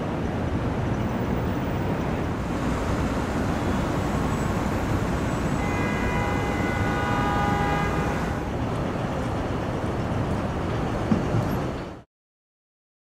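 Steady city street traffic rumble. For about three seconds in the middle, a sustained chord of several high steady tones rises above it.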